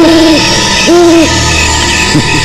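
Owl hooting: one hoot ending just after the start and a second about a second in, each about half a second long, rising briefly at the onset and then holding steady. Eerie sustained background music plays beneath.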